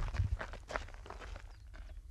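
Footsteps and small crunches on loose gravel, with handling knocks, briefly over a low rumble of wind on the microphone.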